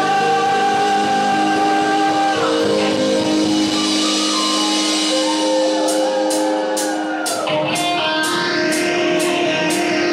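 Live rock band playing: sustained, bending electric guitar notes over bass and keyboard, with the drum kit coming in about six seconds in on evenly spaced cymbal strokes, about three a second.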